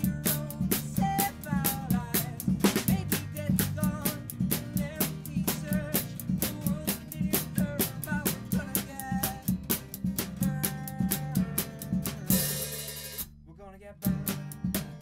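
Live band of drum kit, acoustic guitar and electric bass playing an upbeat song with a steady beat. Near the end a cymbal crash rings out and the band stops briefly before coming back in.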